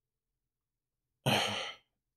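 A man's single sigh, a short breath out with a little voice in it, about a second and a quarter in, loudest at the start and fading away.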